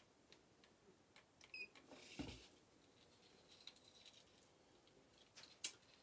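Near silence with faint rustling and a few small clicks of a beaded chain necklace being handled and picked up, a soft knock about two seconds in and sharper clicks near the end.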